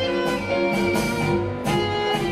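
Live orchestra playing ballroom tango music, sustained melody notes over a marked beat of about two accents a second.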